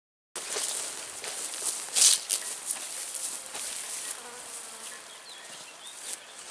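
Insects buzzing and chirping in a grassy summer meadow, starting suddenly just after the beginning, with a few short rustling noises, the loudest about two seconds in.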